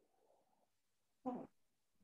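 Near silence broken by one short voice-like sound, about a quarter second long, a little over a second in.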